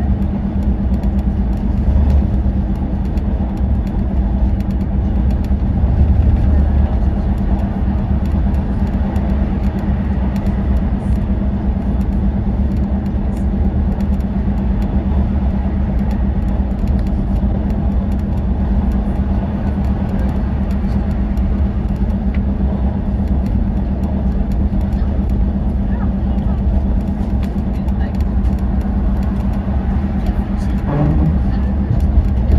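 Volvo B11RT coach's six-cylinder diesel cruising at a steady motorway speed, heard from inside the coach: a constant low hum over tyre and road rumble, unchanging throughout.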